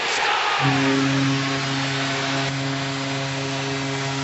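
Arena goal horn sounding for a home-team goal: one steady low blast that starts about half a second in and holds, over a cheering crowd.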